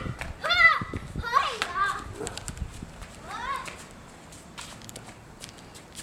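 A young child's high-pitched squeals while playing: three short ones in the first four seconds, then quieter.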